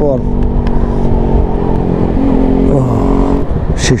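Motorcycle engine and exhaust running steadily while riding, with wind rumble on the microphone; the engine note dips briefly between about two and three seconds in.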